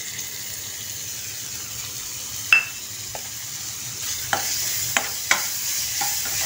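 Chopped onions sizzling in hot oil in a steel kadhai. A metal spoon clinks once against the pan with a short ring midway, then stirs and knocks against the pan several times near the end, and the sizzle grows louder as the onions are turned.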